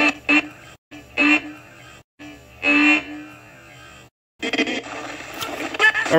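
Spirit box sweeping through radio stations: short, choppy fragments of music and voices over static hiss, cut by a few abrupt silent dropouts.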